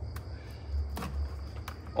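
A few faint plastic clicks from the snap-fit case of a handheld battery spot welder being pried apart by hand, over a steady low hum.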